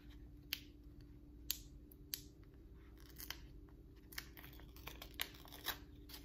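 Stickers and their backing paper being handled and peeled from a sticker sheet: a string of irregular sharp paper crackles and snaps. A steady low hum runs underneath.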